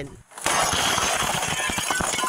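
Steady, dense crackling and clattering noise with many sharp clicks at a house fire, picked up by a police body camera; it starts suddenly about half a second in after a brief gap.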